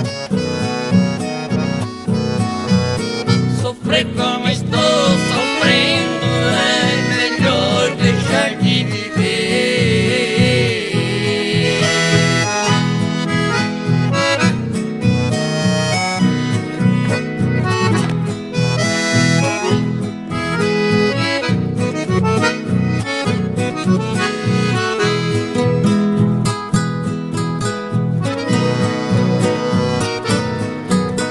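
Piano accordion (sanfona) playing an instrumental chamamé, with a steady bouncing bass-and-chord rhythm under the melody, joined by a harmonica whose wavering high line stands out in the first half.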